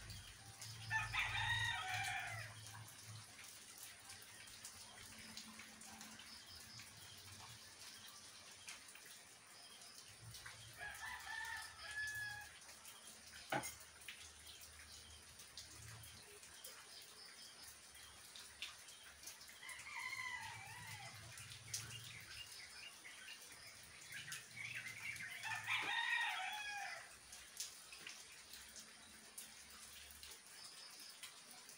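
A rooster crowing four times, several seconds apart, over faint steady rain.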